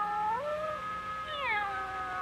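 Cartoon kittens meowing: a drawn-out, pitched mewing that rises about half a second in and falls again near the middle.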